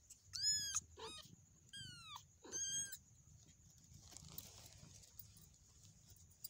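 A young kitten mewing: four short, high-pitched mews in the first three seconds, as it is handled while nursing, then only faint rustling.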